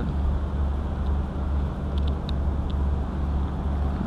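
Steady low rumble of outdoor urban background noise, with a few faint clicks about two seconds in, in keeping with a camera's setting dials being turned.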